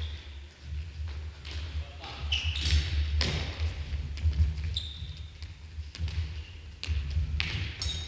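Futsal ball being kicked and dribbled on a hardwood gym floor: repeated thuds and taps that echo through a large hall. Short high squeaks of sports shoes on the floor come a few times, about two seconds in, near the middle and near the end.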